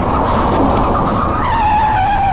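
Tyres screeching in a hard skid, heard from inside a passenger van: one long squeal that drops in pitch about one and a half seconds in.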